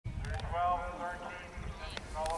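A person's voice calling out briefly, loudest in the first second, over the low thudding hoofbeats of a horse cantering on sand and grass.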